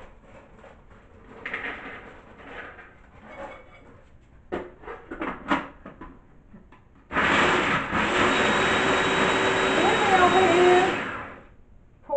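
Electric food chopper running for about four seconds as it chops pecans, starting suddenly and dying away as it stops. A few light knocks come before it.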